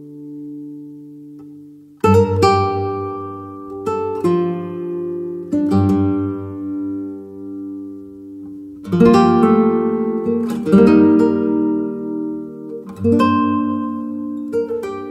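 Slow solo acoustic guitar music: a chord rings out and fades for about two seconds, then new plucked chords are struck roughly every two seconds, each ringing on, the loudest a little past the middle.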